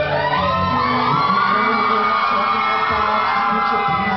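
Live band music, with an audience cheering and whooping over it.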